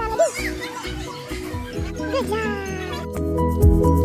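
Background music with a steady beat, with high gliding voice sounds over it near the start and again about two seconds in. About three seconds in, the music changes to a louder passage with heavier bass.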